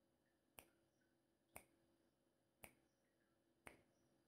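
Countdown timer ticking, a sharp faint click about once a second, while the answer time for a quiz question runs.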